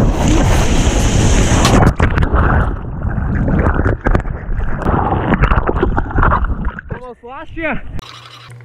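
Loud rushing whitewater and wind noise on a surfboard-mounted action camera as the board rides broken surf and plunges into the foam. Near the end a short wavering voice is heard.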